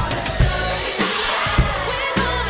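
Acoustic drum kit played along to a dance-pop backing track: kick and snare hits over the recorded song, with a bright hiss-like wash coming in about a third of the way through.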